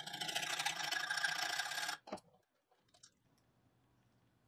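Hand file rasping across the edge of a thin steel hinge blank held in a bench vise, refining its shape. The filing stops about halfway through, followed by a faint click.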